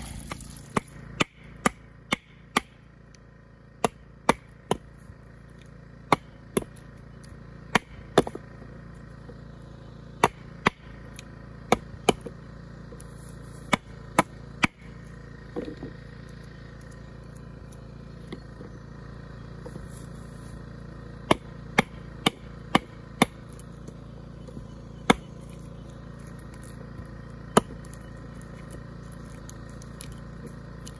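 Hatchet chopping into a timber block on a wooden stump: sharp, irregular strikes, some in quick runs of two or three with pauses between, over a steady low hum.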